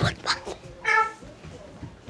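A short high-pitched call, held on one pitch for a moment, about a second in, just after a brief burst of sound at the start.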